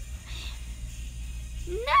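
A cat meowing once near the end: one long call that rises and then falls in pitch.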